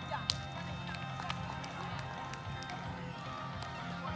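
A single sharp slap of a hand striking a volleyball just after the start, with a weaker one about a second later. Underneath runs a steady low hum with faint voices and music.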